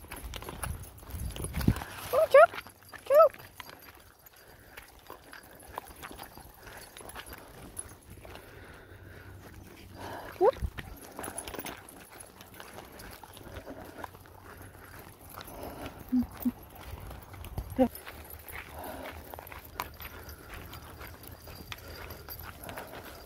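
Footsteps of a person and several small dogs walking on a dirt trail, irregular steps and scuffs, with a few short rising squeaks about two, three and ten seconds in.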